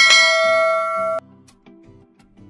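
Notification-bell chime sound effect: one bright ringing note with many overtones that cuts off suddenly about a second in, followed by faint background music.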